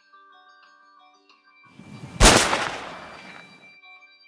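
A single rifle shot about two seconds in, sharp and loud, its report fading away over a second or so. Quiet background music plays under it.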